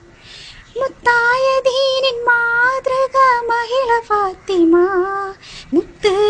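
A young girl singing a Malayalam Islamic devotional song solo, with long held notes and small ornamental turns in the melody. The line comes in about a second in and pauses briefly for a breath near the end.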